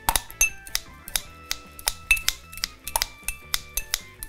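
Kitchen scissors snipping parsley inside a glass tumbler: a run of sharp clicks, about three a second, over soft background music.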